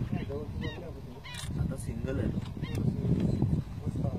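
Bar-headed geese honking: a run of short nasal calls, about two a second, over a steady low rumble.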